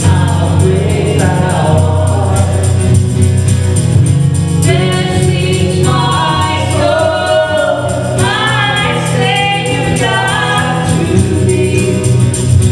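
Live gospel song: a man and a woman singing in harmony over a strummed acoustic guitar, with tambourine keeping time. The voices come in stronger about five seconds in.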